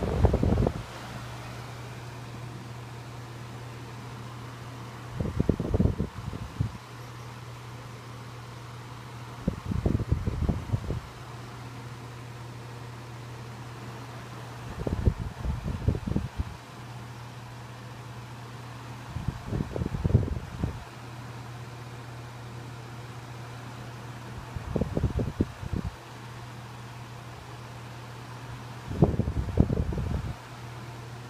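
1980s Envi-Ro-Temp 12-inch oscillating desk fan running on high speed, with a steady motor hum under the rush of air. Low rumbling bursts of air buffet the microphone about every five seconds.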